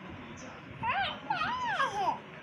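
High-pitched whining cries, an animal's, starting about a second in: three calls that each rise and fall in pitch, over a faint background murmur.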